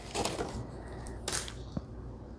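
Paper handling as a handmade junk journal with dried rose petals glued around its page is picked up and opened: a soft rustle, a short sharp rustle a little past halfway, and a small click near the end.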